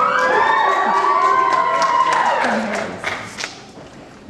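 Audience cheering, with many voices whooping and calling out over one another. The cheering dies away about three seconds in, leaving a few scattered claps.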